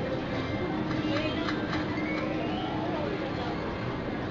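Video slot machine playing its free-spin music and reel-spinning sounds, steady and moderately loud, with a held low note from about a second in, over casino background noise.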